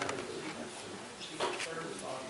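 Quiet, indistinct murmured speech, a few short low voice sounds rather than clear words.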